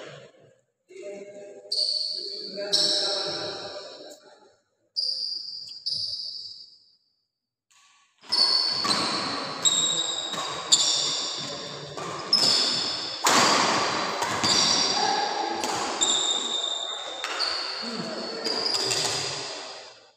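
Badminton rally: rackets hitting the shuttlecock and shoes squeaking on the court mat, echoing in a large hall, with a few voices. It goes quiet about seven seconds in, then a fast run of hits and squeaks follows.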